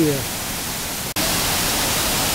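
Steady rush of water. About a second in it breaks off abruptly and returns louder and hissier: the waterfall on the River Bran running below the bridge.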